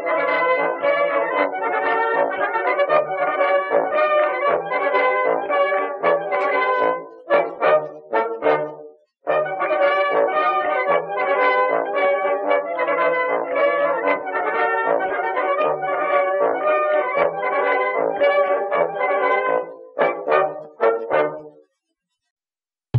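Instrumental background music with brass, cutting out for a moment about nine seconds in, and breaking into short choppy chords before stopping near the end.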